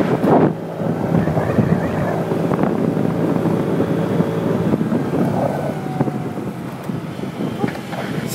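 Tao Tao 50cc moped engine running at a steady cruising speed under the rider, with wind buffeting the microphone.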